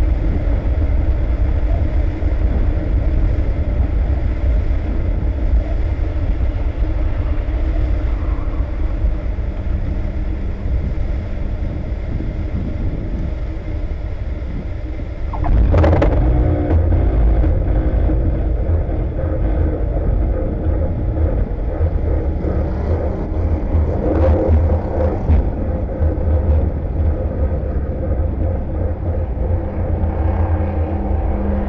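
Rocket Racer landing: a steady low rumble of wind and airflow. A sudden jolt about halfway through marks the wheels touching down, and a louder rumbling follows as the aircraft rolls on the runway.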